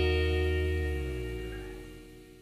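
Background music ending on a held chord that fades out steadily.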